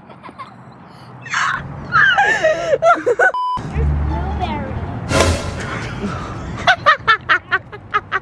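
Voices talking and a child laughing in short rhythmic bursts near the end, with a brief steady beep about three and a half seconds in.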